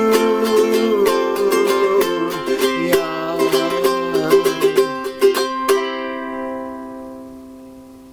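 Ukulele strummed through the closing bars of a song. A final strum about six seconds in rings on and fades away.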